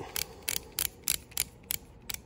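Adjustable micropipette's volume knob being turned, clicking through its detents at about three clicks a second as the volume is dialled up toward 5 microliters.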